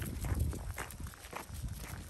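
Footsteps crunching on gravel, a few uneven steps.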